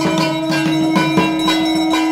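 A conch shell (shankha) blown in one long steady note, over the quick beat of a dhak drum at about three to four strokes a second and ringing bells.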